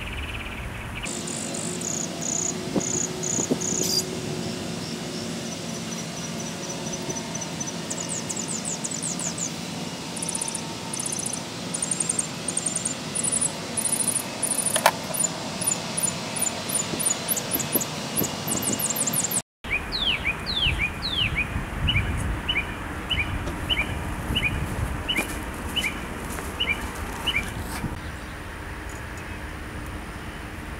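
Songbirds chirping and singing in repeated short phrases over a steady background hum, with a single sharp click near the middle from handling the air rifle.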